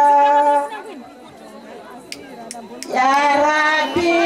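A woman's voice holding a long sung note, which breaks off under a second in, leaving a crowd of women chattering with three sharp taps; about three seconds in a voice swoops up into another long held note.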